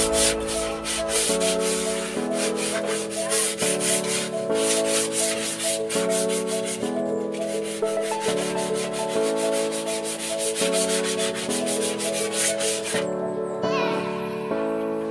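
Rapid, rhythmic scrubbing strokes of a gloved hand cleaning glass, stopping about a second before the end, over background music with slowly changing piano-like chords.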